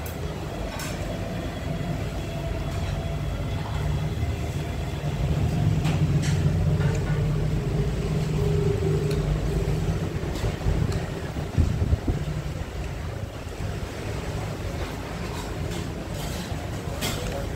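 Road traffic rumbling past, swelling to its loudest about a third of the way in and easing off again, with a few sharp clicks about three-quarters of the way through.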